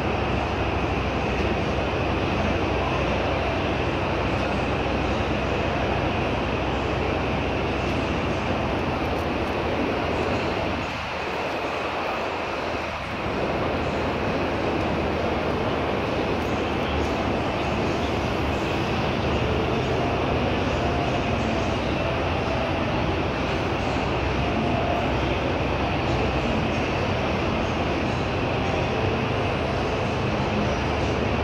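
Steady, loud mixed background din with no distinct event. It dips briefly about eleven seconds in.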